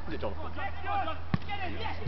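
Voices of players and spectators calling out across an outdoor football pitch, over a steady low rumble, with one sharp thud about one and a half seconds in.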